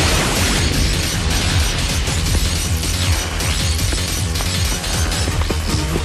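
Dramatic action-cartoon soundtrack music with a sudden magic energy-blast sound effect right at the start.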